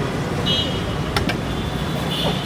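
Steady rumble of road traffic. A thin high-pitched tone enters about a quarter of the way in, and two sharp clicks come just past the middle.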